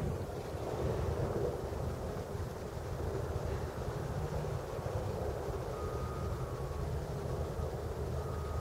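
Steady low rumble of wind on the microphone over a distant hum from the port across the harbour, with a faint high steady tone briefly about three-quarters of the way through.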